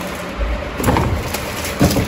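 Plastic bags and packaging rustling as items are picked through by hand, with a couple of brief louder handling sounds about a second in and near the end.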